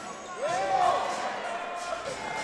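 Court sound from a basketball game: a basketball being dribbled on a hardwood floor, with a couple of short sneaker squeaks about half a second in and voices in the arena behind.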